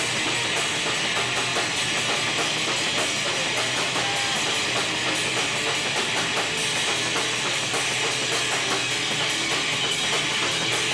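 Rock band playing live: electric guitars and bass over a drum kit, with cymbals struck in a steady, fast beat.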